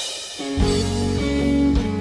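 A live band starts a song's instrumental intro about half a second in: held chords over a low, steady bass note, with guitar.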